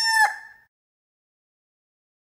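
The tail of a rooster crow: its last long held note stops about a quarter second in and fades quickly, followed by dead silence.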